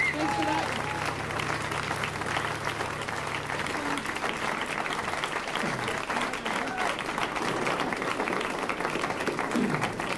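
Audience applauding, with a few voices calling out over the clapping. A low held tone dies away about four seconds in.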